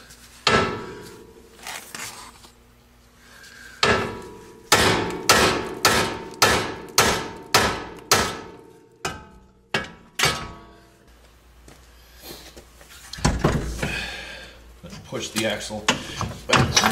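Heavy hammer striking a car's steel steering knuckle where the lower ball joint stud passes through, to shock the ball joint loose. About a dozen sharp, ringing metal blows, most of them coming about two a second in the middle.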